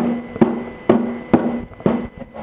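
Snow shovel banged against the ground five times in an even rhythm, about two strikes a second, each a sharp knock followed by a short ring.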